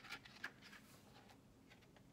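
Faint papery rustle of a picture book's pages being handled and turned: a few short crinkles in the first half second, then near silence.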